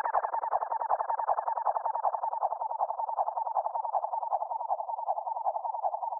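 Outro of an electronic beat: the drums and bass have dropped out, leaving a single filtered synthesizer sound pulsing rapidly and evenly in the midrange, slowly fading.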